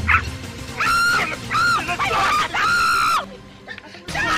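A woman screaming in three high-pitched shrieks, the last the longest, with background music underneath.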